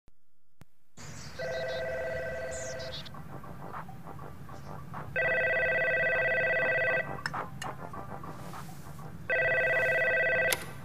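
A telephone ringing three times, about four seconds apart. Each ring is a rapid two-tone trill lasting about two seconds, and the third is still sounding at the end.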